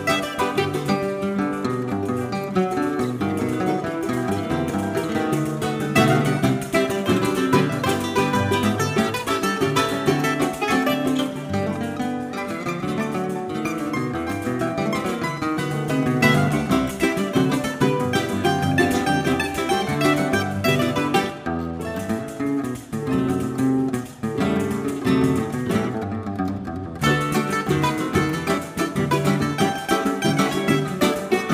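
Live choro ensemble playing: a bandolim (Brazilian mandolin) picks the melody over acoustic guitars and a cavaquinho.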